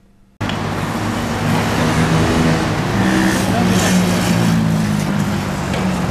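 Road traffic running past steadily, with the low hum of vehicle engines, cutting in abruptly about half a second in.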